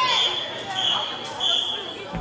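A referee's whistle blown three times in quick succession, each blast short and steady at the same high pitch, over spectators' chatter.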